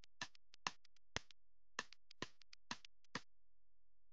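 Background music made of finger snaps: sharp clicks about two a second in a loose rhythm, with no melody yet.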